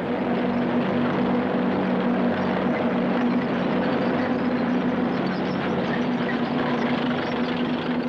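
Tanks on the move: a steady engine drone with a constant hum over a dense, noisy rumble of running gear.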